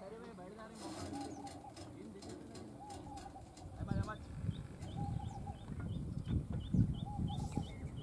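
A bird repeating a short high call about three times a second through the second half, heard over faint distant voices.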